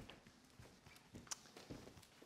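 Near silence: room tone with a few faint, short taps or knocks, the clearest a little over a second in.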